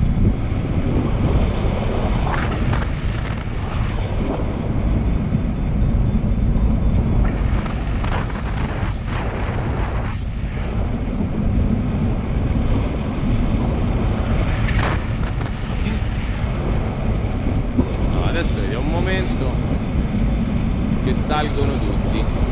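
Steady low rumble of wind buffeting the camera microphone in paraglider flight, from the airflow of flying at about 35 km/h airspeed.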